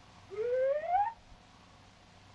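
A single rising, whistle-like glide in pitch on an early cartoon soundtrack, climbing steadily for a bit under a second.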